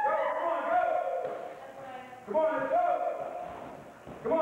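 A man's voice speaking or calling out in drawn-out phrases. One phrase fades out and a new one begins about two seconds in.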